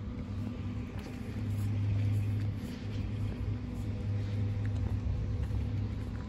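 A steady low mechanical hum with faint steady tones above it, dipping slightly now and then.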